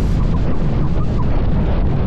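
Wind buffeting the microphone of an onboard camera, mixed with rushing water and spray off the hull of the SP80 kite-powered speed boat running fast across the sea. It is a loud, steady, low rumble with a hiss of spray above it, and no engine.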